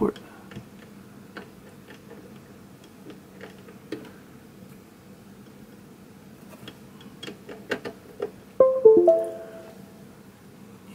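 Faint clicks and taps of a USB cable being plugged in, then, near the end, a short two-note computer chime: the sound of the computer detecting a newly connected USB device, the Blue Nebula pedal.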